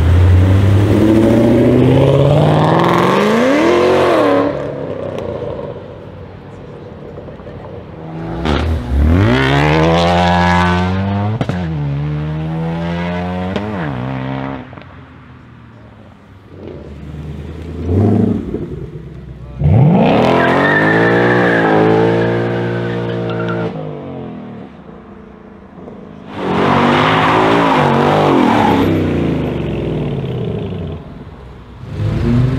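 Ford Mustangs, one of them a Shelby GT500, accelerating hard past the camera one after another. There are four loud runs, each a rising engine note; the longer runs drop in pitch at gear changes.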